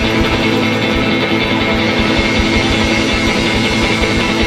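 Loud, dense instrumental passage of a guitar rock song: full band with guitars held over fast, steady low drum beats, no singing.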